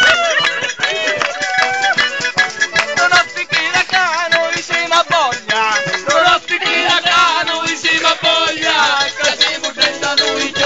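Calabrian tarantella played live on organetto (diatonic button accordion) with percussion, a fast, continuous folk-dance tune.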